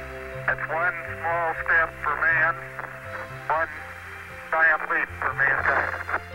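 Neil Armstrong's voice from the Moon over the Apollo 11 radio link, thin and narrow-band, with his words coming in several short phrases. Soft background music runs underneath.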